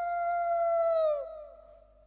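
A man's voice howling like a dog: one long held note that swoops up at the start, sags slightly at the end and fades out about a second and a half in.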